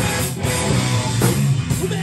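Live rock band playing an instrumental passage: electric guitars, electric bass and drum kit.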